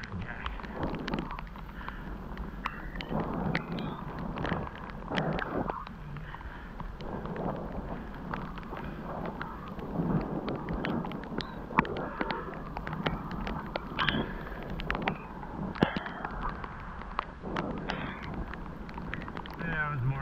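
Bicycle riding over a wet, leaf-strewn paved trail: a continuous rushing noise of tyres on wet pavement and wind on the microphone, with many sharp clicks and knocks as the bike and camera jolt over bumps.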